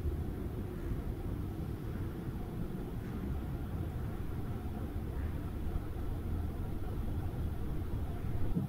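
A steady low rumble of background noise with no events standing out.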